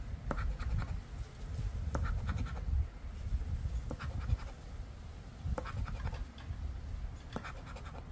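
A round, chip-shaped scratcher scraping the coating off a scratch-off lottery ticket in short, uneven strokes.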